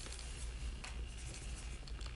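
Pen writing on paper in small scratches and light rustles, over a low steady hum.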